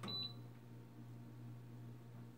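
A single short high-pitched electronic beep from an electric fireplace's control panel as the heater button is pressed, right at the start, then only a faint steady low hum.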